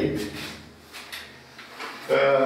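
A man's voice trails off, then a pause holds a low hum and a few faint soft knocks.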